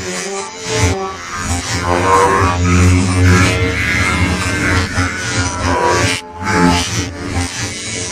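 Music with held pitched notes over a strong low bass, briefly dropping out about six seconds in.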